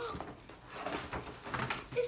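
Rustling and light knocking of gift packaging: paper and a cardboard toy box being handled and pulled out of a gift bag.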